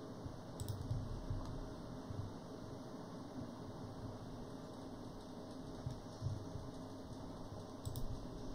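A few scattered clicks of computer keys over a faint, steady room hum.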